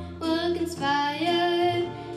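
A young girl singing solo into a microphone, holding sustained notes after a brief breath at the start, over a quieter instrumental accompaniment.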